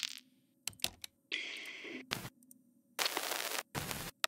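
Short percussion click samples auditioned one after another from a sample browser: a few sharp clicks, a hissy hit of under a second, then two more short noisy hits near the end. They are candidate click layers for the attack of a bass.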